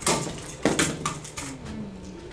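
A few sharp clinks and knocks in the first second and a half, followed by a faint low sliding tone.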